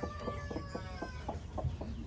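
A chicken calling: one drawn-out, slightly falling note lasting about a second and a half, with faint clicks and taps around it.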